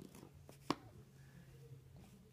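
A puzzle piece tapping against the puzzle tray as it is pressed into place: one sharp click about two-thirds of a second in, with a fainter tap just before it.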